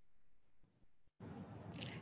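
Near silence, then about a second in a faint, steady room hiss switches on abruptly.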